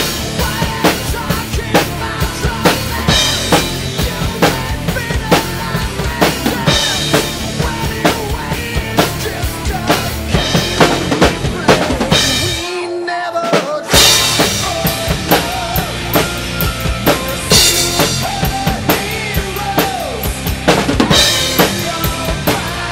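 Acoustic drum kit played hard, with bass drum, snare and cymbals, along to a recorded power metal song. About thirteen seconds in the bass and drums drop out for a moment, then the full kit and band come back in at full strength.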